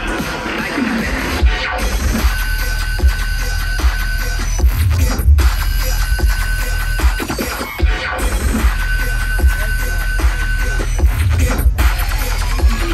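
Bass-heavy electronic dance music from a live DJ set, played loud over a festival stage's sound system. A high held synth note comes and goes, and the whole mix cuts out briefly about every three seconds.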